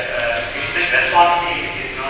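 A man speaking into a handheld microphone during a talk; only speech, no other sound stands out.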